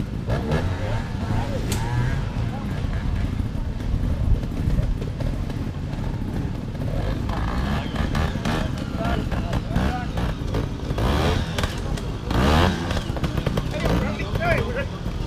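Trials motorcycle engines running among a group of waiting riders, with indistinct talk from people nearby and a steady low rumble.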